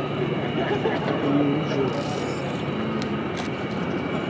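UTVA Lasta 95 light trainer's piston engine and propeller running as a steady drone as the aircraft flies past, with faint voices underneath.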